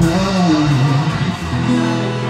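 Live band music: a strummed guitar, with a voice over it for about the first second and a half, then held chords.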